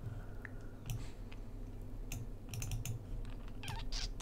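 Faint, scattered clicks of a computer mouse as a window is dragged around the screen, with a quick run of clicks a little past halfway.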